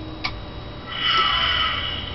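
A click, then about a second later the power-up sound effect of a Back to the Future time-circuit prop replica comes on: several steady high electronic tones with a fainter tone sliding down beneath them. The delay is the wired one-second hesitation after the drive circuit switch is turned on.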